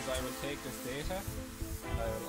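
Background music at a low level, with faint, indistinct voices talking over it.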